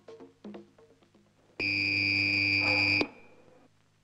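Electric fencing scoring apparatus buzzer sounding once: a steady, shrill buzz of about a second and a half that starts and cuts off sharply, the signal of a registered touch.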